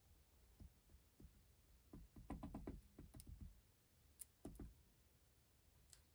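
Faint light taps and clicks of a fine-tipped Art Glitter Glue bottle dabbing glue onto a paper die-cut layer, a quick cluster about two seconds in and a couple more near four and a half seconds.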